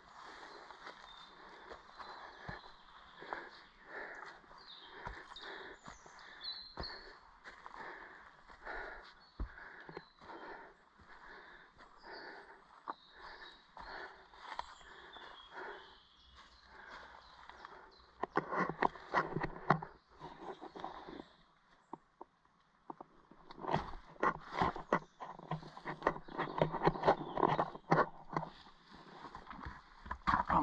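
Footsteps crunching through dry leaf litter at a steady walking pace, then two spells of louder, denser crunching and rustling in the dry leaves, about 18 and 24 seconds in.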